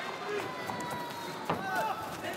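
Arena crowd noise in the background of a kickboxing bout, with one sharp smack of a strike landing about one and a half seconds in, followed by a brief shouted voice.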